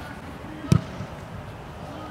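A football struck with the foot on artificial turf: one sharp thud about three quarters of a second in, then a lighter touch, as the ball is dragged to the side and pushed forward in a dribbling move.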